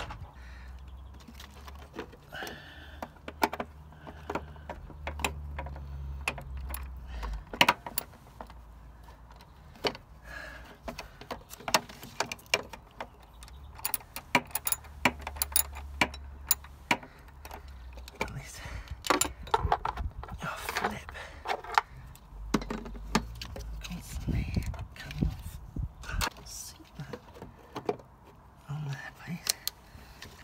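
Scattered metal clicks and clinks from a socket wrench and loose metal parts as a car's wiper motor and linkage are worked back into place by hand.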